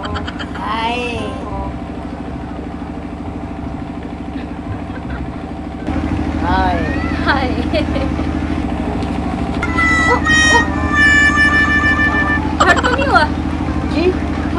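A man and a woman laughing over a steady low mechanical hum that steps up in loudness about six seconds in, with a held, horn-like tone from about ten to twelve seconds.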